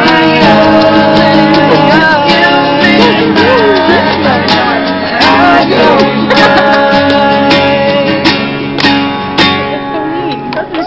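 Two acoustic guitars strummed with live singing over them, getting somewhat quieter near the end.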